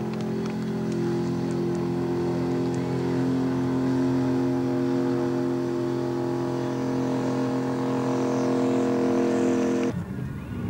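Bandag Bandit drag truck's engine running at a steady, even pitch as the truck rolls slowly along the track.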